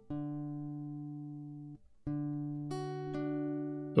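Background music on plucked guitar: a chord rings out and fades, a second chord sounds about two seconds in, and higher notes join soon after.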